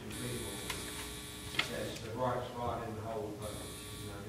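A steady electrical buzz that cuts in sharply, stops about halfway through and comes back near the end, over faint, indistinct speech in the room.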